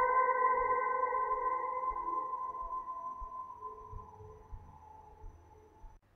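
Ambient electric guitar tone soaked in reverb and delay: a held chord slowly dies away to near silence.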